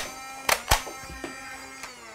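XS HK416D shell-ejecting flywheel foam dart blaster firing: sharp shots, one at the start and two in quick succession about half a second in, over a steady humming tone.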